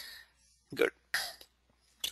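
A man saying one short word, "good", under a second in, then a short breathy noise, with silence around them.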